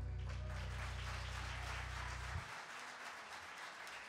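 Audience applause at the end of a song, with the last chord dying away at the start. A low held bass note stops abruptly about two and a half seconds in, leaving only the clapping.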